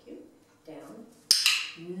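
A sharp click about a second in, struck twice in quick succession and followed by a brief light clatter.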